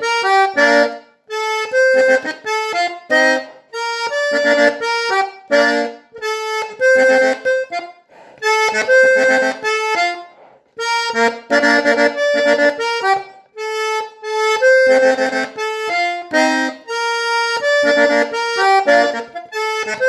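Hohner Erica diatonic button accordion played solo: a quick melody on the treble buttons over bass-button chords, in short phrases broken by brief pauses.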